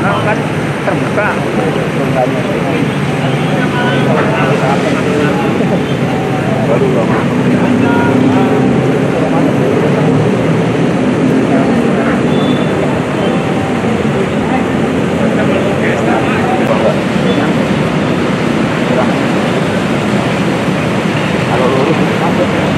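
Indistinct voices of people talking over a loud, steady rushing noise.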